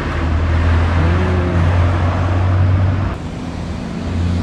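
A small kei car driving past close by, its engine and tyre noise making a steady low hum that cuts off suddenly about three seconds in.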